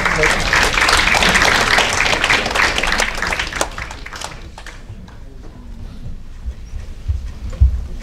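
Audience applause that fades out over about four seconds, followed by a few low thumps near the end.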